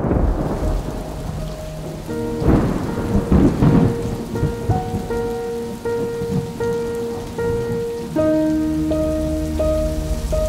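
Heavy rain falling with deep rolls of thunder, loudest about a third of the way in. A soft repeating melody of held notes plays under it from about two seconds in.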